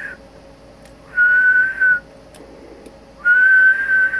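A person whistling one steady note in short blasts into the transmitter microphone to drive the Yaesu FL-2100B linear amplifier for an output power test: one whistle about a second in, another starting near the end, over a faint steady hum.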